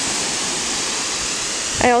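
Water spraying steadily from a garden hose in a fine mist, watering in freshly sown seed rows; an even, unbroken hiss.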